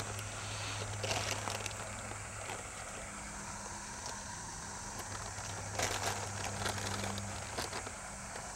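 Dry herabuna bait powder (Marukyu Asadana Ippon) being scooped from its paper bag with a measuring cup and poured into a plastic bowl: soft rustles of the bag and the powder, heaviest about a second in and around six seconds. Under it runs a steady low hum.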